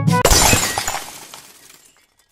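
A brass note cuts off, then a sudden crash of shattering glass tinkles as it dies away over about a second and a half.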